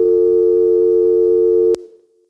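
Telephone tone: a steady, unbroken tone of two close pitches sounding together, which cuts off suddenly about three-quarters of the way through and leaves a brief fading tail.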